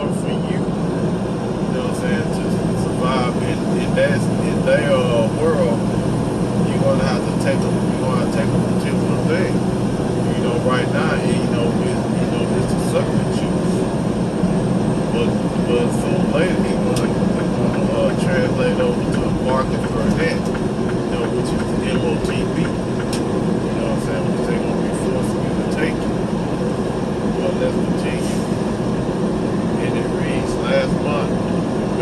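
Steady road and engine noise of a vehicle driving at highway speed, heard from inside the cab, with faint voice-like sounds over it.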